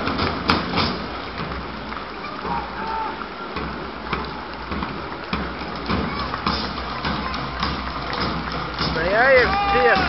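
A school marching drumline playing as it passes, its drum strikes mixed into crowd chatter. A man's voice starts near the end.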